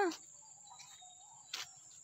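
Crickets trilling faintly in a steady high-pitched drone, with a single soft click about one and a half seconds in.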